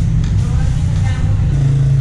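A loud, steady low hum of background machinery, with a faint voice in the background about half a second to a second in.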